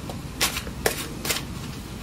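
A tarot deck being shuffled by hand, with three short card snaps about half a second apart.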